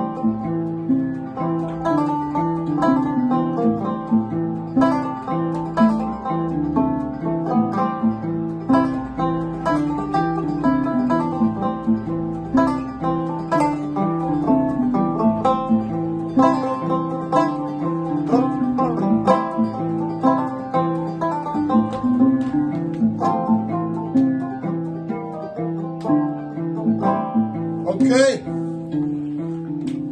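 A kamalen n'goni, a West African calabash harp with fishing-line strings, and a banjo playing a tune together with continuous plucked notes.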